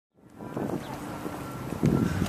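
Wind noise on the microphone: a steady rush that begins just after a brief silence and swells louder near the end.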